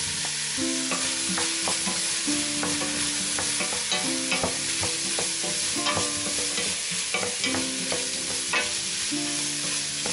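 Chopped carrots, celery, onion and potato sizzling in butter in a stainless steel pot, stirred with a spatula that scrapes and clicks against the pot at irregular moments. The potato chunks are still tumbling in at the start.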